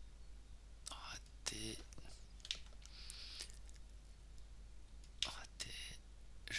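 A man muttering and whispering quietly to himself in short snatches, about a second in and again near the end, with a brief breathy hiss about three seconds in.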